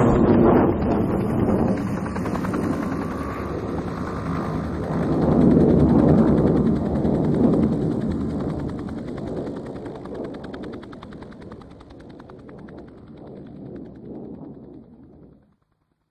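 Low rumble with a fast, even rattle in it, like distant automatic gunfire, fading slowly and cutting off about half a second before the end.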